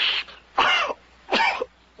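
A man's voice clearing his throat twice in short bursts, about a second apart, just after a brief breathy hiss.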